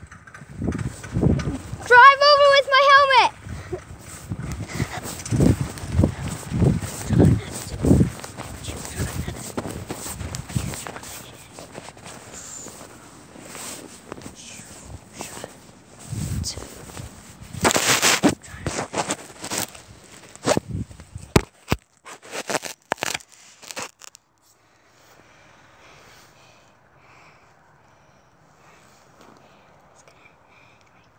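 Rustling, bumps and thumps from a handheld phone camera being carried and handled. A short, high, wavering voice-like squeal comes about two seconds in, a louder scrape near the middle and a few sharp clicks after it. The last several seconds are much quieter.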